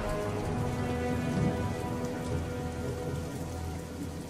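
Steady rain sound effect with a low rumble beneath it and faint held tones, a stormy night ambience in a stop-motion film's soundtrack.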